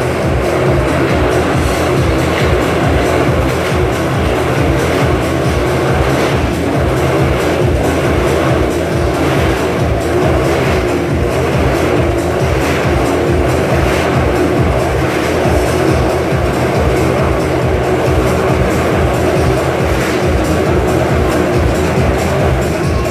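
Motorcycle engines running continuously as riders circle inside a steel-mesh globe of death, under loud show music with a fast, steady beat.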